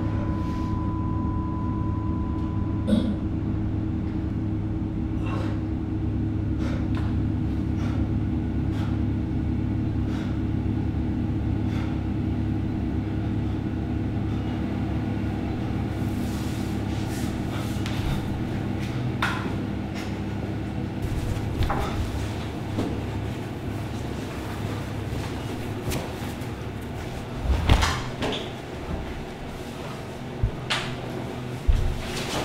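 A steady low hum, with a high ringing tone that stops about three seconds in. Scattered light clicks and knocks run through it, and louder knocks come near the end.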